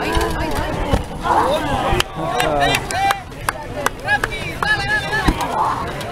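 Rubber practice weapons striking each other and armour in a medieval soft-combat fight: a run of irregular sharp knocks, several in quick succession in the middle and a hard one near the end, mixed with voices.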